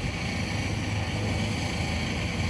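Wheel loader's diesel engine running steadily as it drives along carrying an SUV on its forks: a continuous low hum.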